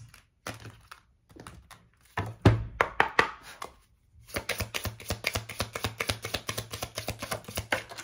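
An oracle card deck being shuffled by hand: a few sharp knocks of cards against each other, then a fast, even run of soft clicks, several a second, as the cards are shuffled overhand.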